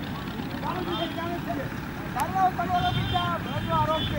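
People's voices at a distance, talking and calling, more of them in the second half, over a steady low rumble.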